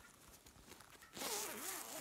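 Zip on a fabric project bag being pulled open: a short rasping hiss starting a little past a second in.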